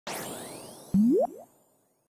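Cartoon-style intro sound effect: a bright shimmering swish, then about a second in a loud springy boing that rises quickly in pitch, with a fainter echo of it, fading out by halfway.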